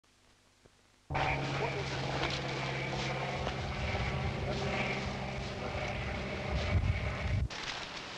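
Light spotter plane's piston engine droning steadily, starting abruptly about a second in and cutting off sharply near the end.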